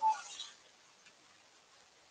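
A woman's voice trailing off in the first half second, then near silence with one faint click about a second in.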